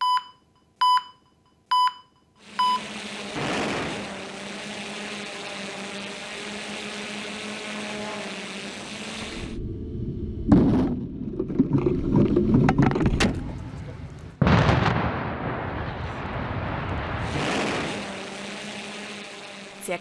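Four short beeps about a second apart, then steady outdoor noise. About ten seconds in, explosive charges go off in a demolition blast with loud cracks and a low rumble as the concrete and masonry building comes down. From about fourteen seconds in, a second loud rumble of the collapse, heard from another position, slowly fades.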